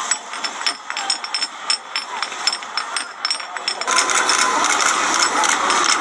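Street ambience: background chatter of voices with traffic, broken by frequent sharp clicks. About four seconds in it gives way to a louder, hissier crowd ambience.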